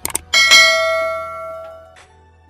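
Notification-bell sound effect of a YouTube subscribe-button overlay: two quick mouse clicks, then a single loud bell ding that rings out and fades away over about a second and a half.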